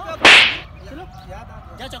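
A single loud, sharp slap to the face about a quarter of a second in: a short crack that fades within about half a second.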